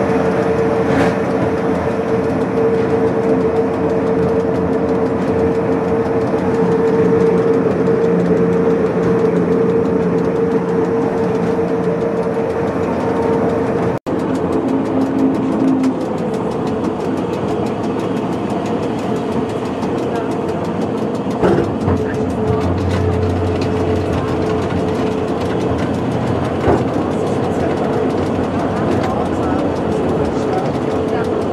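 Electric rack railcar of the Pilatus Railway running on its steep cog line, heard from inside the driver's cab: a steady whine from the motor and gearing over the rumble of the running gear. About halfway through the sound cuts abruptly to a slightly quieter, rougher running as the car slows into a passing loop.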